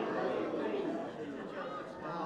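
Indistinct chatter of several people talking at once, no words standing out.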